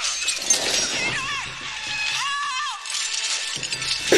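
Action-film soundtrack: continuous crashing and shattering debris over a music score, with two short wavering high-pitched sounds about a second and two seconds in.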